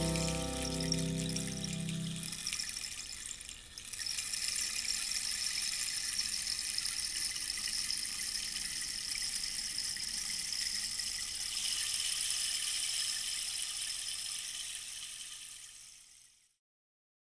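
Title-sequence music: its last pitched notes fade out in the first couple of seconds. After a short dip about four seconds in, a steady high hissing, rushing texture, like running water, holds until it fades away at the end.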